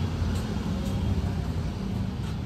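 Steady low background rumble with a few faint light clicks.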